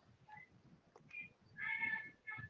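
Faint, short high-pitched animal calls, three in a row, the last and longest near the end.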